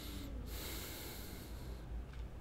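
A person's breath through the nose, close to the microphone: one soft, drawn-out breath from about half a second in to near the end, over a low steady hum.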